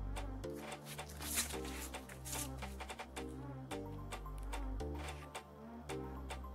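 Background music with a steady beat: a bass line moving note to note about once a second under quick, sharp percussion ticks, with a loud hissing cymbal-like swell about a second and a half in.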